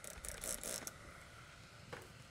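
A trigger spray bottle spraying cleaner onto a melamine sponge: a few short hisses in the first second.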